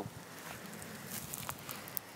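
Faint rustling with a couple of light ticks, from hands handling young shrub stems over loose soil.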